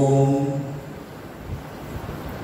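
A man's voice holding one long, steady intoned note that ends less than a second in, leaving the quiet hum of the hall.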